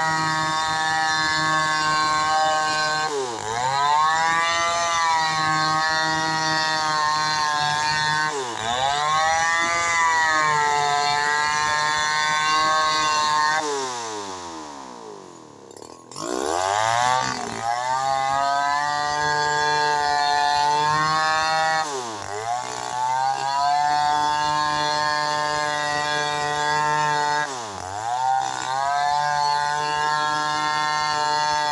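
Stihl 070 two-stroke chainsaw ripping a waru log lengthwise at high revs, its pitch dipping and recovering every few seconds. About halfway through, it winds down to idle and then revs back up into the cut.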